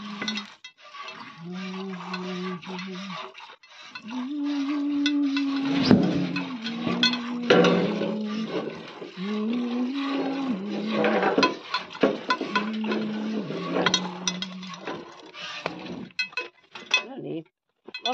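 A voice singing a slow tune in long held notes that step up and down, over irregular clinks and splashes of milk being hand-squirted into a metal bucket.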